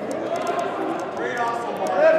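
Indistinct shouting voices of players and spectators in a large indoor soccer hall, with a raised call about a second and a half in and a few short sharp clicks.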